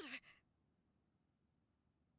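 Near silence: faint room tone, after a brief faint voice trailing off in the first fraction of a second.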